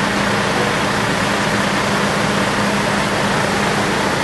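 Fire engines running steadily while they pump water to hoses and an aerial ladder nozzle: a loud, even rush with a constant hum underneath.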